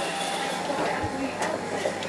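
Steady hiss from a kitchen oven as its door is pulled open on a roasting pork joint and potatoes, with a soft knock about a second in.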